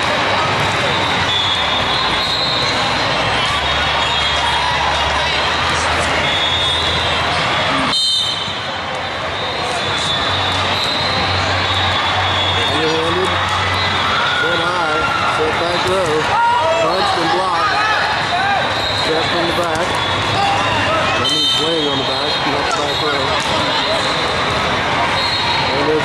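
Reverberant babble of many voices in a large indoor hall, with players calling out and occasional thuds of a volleyball being struck. The sound breaks off abruptly about eight seconds in, dips briefly, then the chatter resumes.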